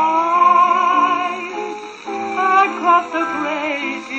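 A 1932 Zonophone 78 rpm dance band record playing on an acoustic cabinet gramophone: the band plays a smooth melodic phrase with vibrato between vocal lines. The sound is thin, with no deep bass.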